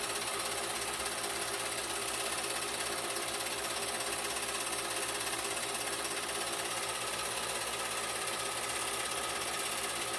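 Home-movie film projector running steadily, its mechanism giving a fast, even mechanical whirr.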